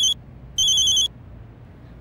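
Mobile phone ringing with a high electronic ringtone in bursts of about half a second, twice, then stopping as the call is answered.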